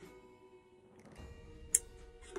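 Quiet, slow dark-ambient Halloween background music with steady held tones, and one sharp click near the end.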